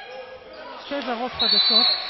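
A referee's whistle blown hard for about half a second near the end, stopping play for a timeout, after a moment of players' voices and ball bounces on the hardwood court.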